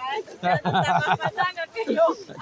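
A voice talking or vocalising, unworded in the transcript; no other sound stands out above it.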